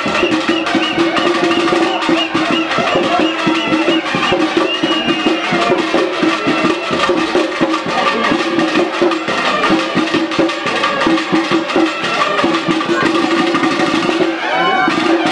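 Traditional percussion music for a kavadi dance: rapid, dense drumming over a steady held tone, with a high wavering melody line above, playing on without a break.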